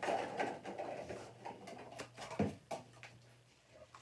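Rustling and light clattering of plastic lids being handled and set out, with a sharper knock about two and a half seconds in.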